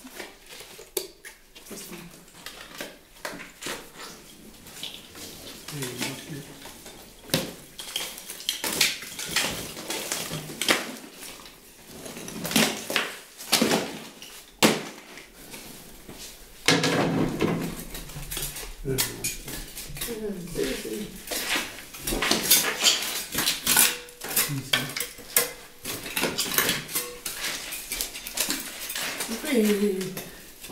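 A metal hand tool scraping and chipping old plaster off a stone wall: a run of irregular sharp scrapes and knocks, busier and louder in the second half.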